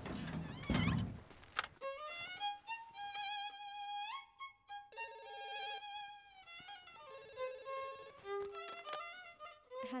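A violin playing a slow melody of long held notes with vibrato and occasional upward slides, starting after a brief burst of noise at the beginning.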